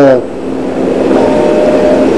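A man's speech breaking off just after the start, followed by a pause of steady room noise with a faint hum.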